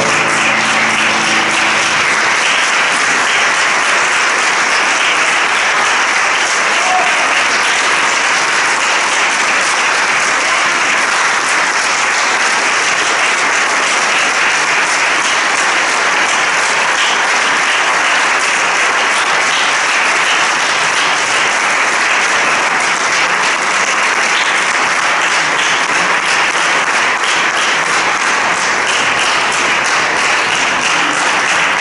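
Concert audience applauding steadily and evenly. The last piano chord rings out underneath during the first two seconds.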